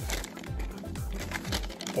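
Paper sandwich wrapper and takeout bag crinkling as a wrapped sandwich is handled and pulled out of the bag, over background music.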